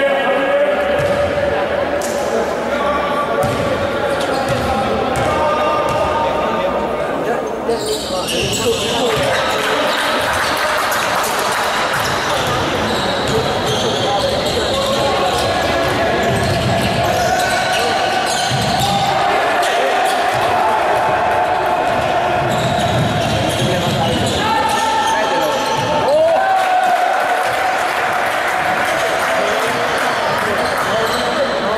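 Live basketball game sound in a large, echoing sports hall: a basketball bouncing on the hardwood court, with indistinct voices of players and bench.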